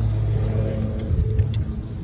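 A steady low engine hum, fading about halfway through into irregular low rumbling.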